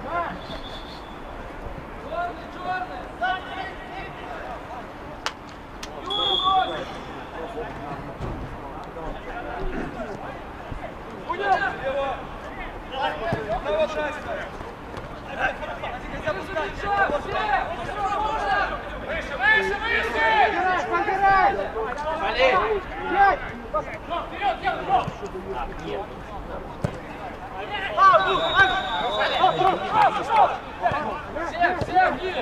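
Men's voices calling and shouting across an outdoor football pitch during play, loudest and busiest in the middle and near the end, with one sharp knock about five seconds in.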